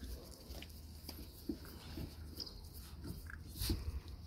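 Puppy making short, soft sounds in scattered bursts while play-biting on its back, the loudest near the end, over a steady low rumble.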